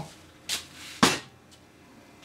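Two short knocks on a workbench about half a second apart, the second louder, as a salvaged outboard air box is picked up off the bench.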